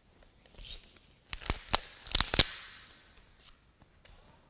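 A paper tissue being torn and crumpled in the hand: a run of sharp crackling snaps, the loudest near the middle, then a crinkle that fades away.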